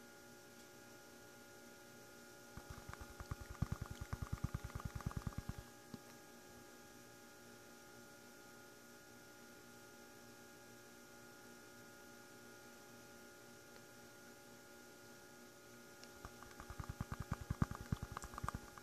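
Rapid light tapping on a plastic gold pan, in two runs of a few seconds each, over a steady electrical hum.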